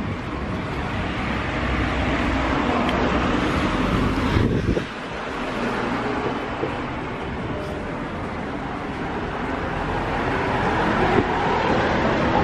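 Street ambience of road traffic passing along a town street, a steady even noise that dips suddenly about five seconds in and builds again toward the end.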